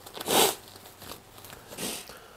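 Black nitrile gloves rustling and stretching as they are pulled onto the hands: a short rustle about half a second in and a weaker one near the end.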